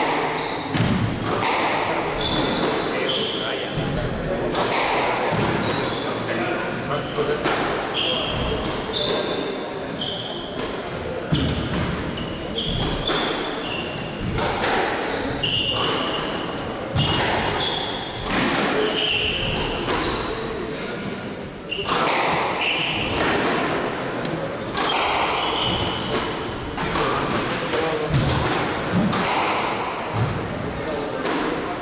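A squash rally: the ball is struck by rackets and smacks off the court walls about once a second. Between the hits come short, high squeaks of shoes on the wooden court floor.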